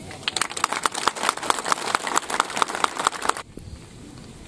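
A crowd applauding, a dense patter of clapping that stops sharply a little before the end.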